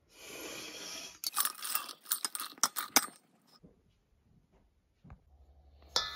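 Dried turkey tail mushroom pieces poured through a stainless steel funnel into a glass jar: a steady hiss for about a second, then about a second and a half of crisp crackling and clattering that stops about three seconds in. A single click comes near the end.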